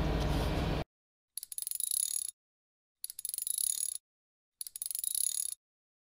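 Pickup truck idling, heard from the cab as a steady low hum, cutting off abruptly under a second in. Then three identical short, high, bright bursts, each opening with a quick run of clicks, about a second and a half apart: an added end-card sound effect.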